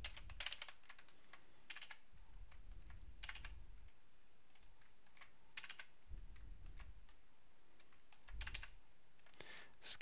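Computer keyboard keys pressed in short, faint bursts of a few clicks, about five times at irregular intervals.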